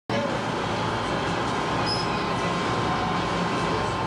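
Steady drone of a passenger boat's engines heard inside its cabin, with a brief high chirp about two seconds in.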